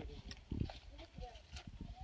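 Several people talking in the background, their words unclear, with a few dull thumps, the loudest about half a second in.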